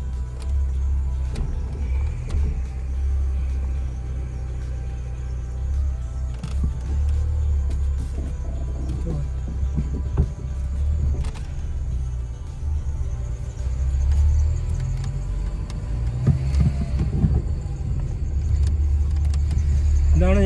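Steady low engine and road rumble heard inside a Peugeot hatchback's cabin while it drives along a street, with faint music over it.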